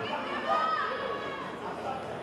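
Indistinct chatter of several overlapping voices in a large sports hall, with no words that can be made out.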